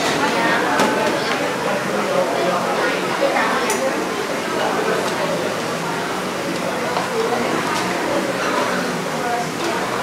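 Busy coffee-shop din: overlapping background chatter, with a few sharp clinks of ladles and utensils against metal pots and china bowls.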